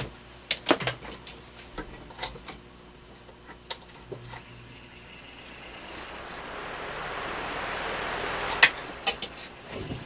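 Holmes oscillating stand fan motor, wired straight to its low-speed winding with the failed electronic control bypassed, starting up and running. A few clicks come first, then from about four seconds in a whoosh of air rises steadily as the blades spin up; there are two sharp clicks near the end.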